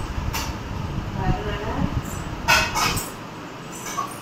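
Steel kitchen vessels being handled, with a sharp clink early on and a quick cluster of clinks and clatter near the end, over a low rumble that stops about three seconds in.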